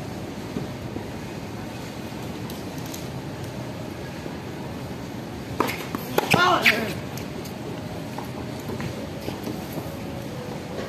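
Tennis rally: about six seconds in, a sharp ball bounce is followed by the crack of a racket striking a tennis ball and a short grunt from the hitter, over steady background noise.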